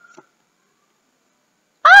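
Near silence for most of the time, then near the end a child exclaims "Oh" with a falling pitch.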